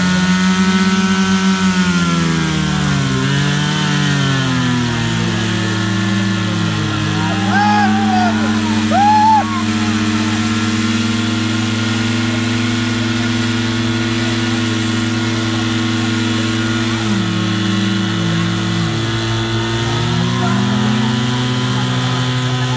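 Portable fire pump's engine running hard at high speed, drawing water from a portable tank. Its pitch dips and recovers a few times, about two to four seconds in and again near the end. Brief shouting voices come about eight to nine seconds in.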